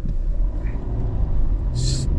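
Car engine and road rumble heard from inside the cabin while driving slowly in traffic, the engine note rising slightly near the end.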